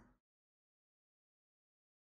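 Near silence: a gap in the audio with nothing audible.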